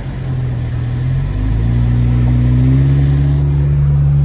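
Car engine and road noise heard from inside the cabin while driving on a wet, snowy road. The engine note rises and grows a little louder about a second and a half in as the car picks up speed.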